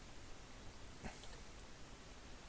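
Quiet room hiss with a single faint, short click about a second in.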